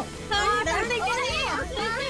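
High-pitched children's and young women's voices chattering and calling out, over background music with a steady low beat.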